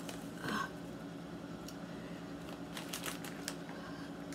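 A short vocal sound about half a second in, then a quick cluster of crinkles and clicks near the end as a foil snack bag is picked up, over a faint steady hum.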